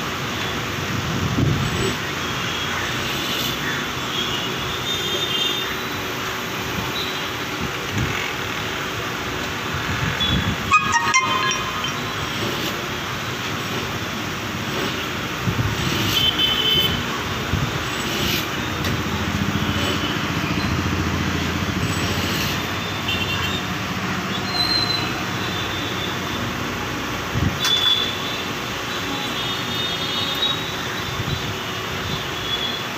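Arihant vertical key cutting machine running steadily as its cutter mills a duplicate key blank, with a few short clicks and knocks as the key and levers are handled. Traffic noise and occasional horn toots sound in the background.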